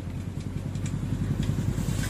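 A low, steady mechanical hum like a running engine, growing a little louder, with a few faint taps of a knife chopping mint leaves on a wooden board.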